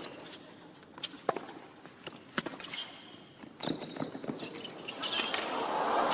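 A tennis rally on a hard court: sharp racket strikes and ball bounces about a second apart, with short shoe squeaks in the middle. Crowd noise swells near the end.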